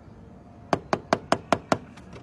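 Six quick, evenly spaced knocks on a vehicle's side window, about five a second, starting a little after half a second in.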